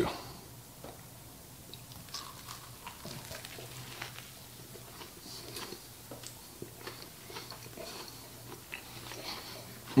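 A man biting into and chewing a griddled sourdough sandwich: faint, scattered crunches and wet mouth clicks, over a low steady hum.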